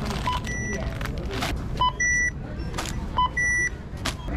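Self-checkout kiosk beeping three times in a regular pattern, about every one and a half seconds, each a short low blip followed by a longer higher tone. A plastic carrier bag rustles as items are packed.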